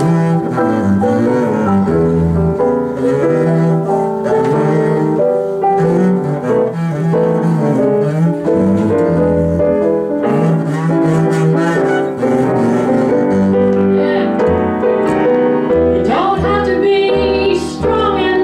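Upright double bass taking a solo, its low notes sliding between pitches, with a piano comping underneath.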